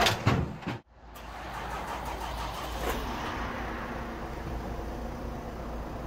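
Knocks and clatter as a motorhome drives onto the wooden-boarded deck of a car-transporter truck, cut off abruptly just under a second in. After that comes the steady low hum of a diesel vehicle engine running.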